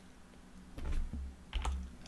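Faint clicks from a computer keyboard in use, with a soft low thump just before them about a second in.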